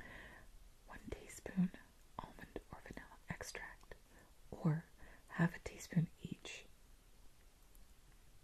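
A woman whispering, reading out a recipe's ingredient list in short phrases.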